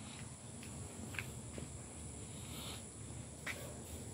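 Faint outdoor background with a steady high-pitched insect drone, crickets or similar, and a few faint clicks.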